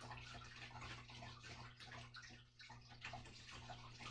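Faint scratching of a pen writing on paper, in short irregular strokes, over a steady low hum.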